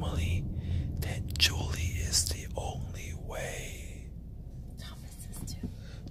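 Hushed, whispered speech over a low, steady rumble like that of a car cabin on the move.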